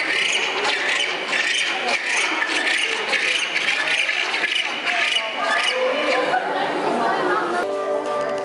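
Penguins calling over the chatter of a crowd of visitors in an indoor penguin enclosure, many short high calls overlapping. Background music comes in near the end.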